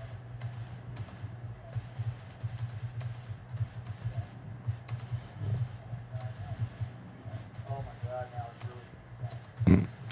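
Typing on a computer keyboard: quick, irregular key clicks over a steady low hum.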